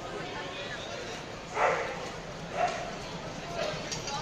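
Bangladesh Railway passenger coaches rolling slowly past, a steady rumble under the voices of people nearby. Two short loud cries rise above it about one and a half and two and a half seconds in, with a weaker one near the end.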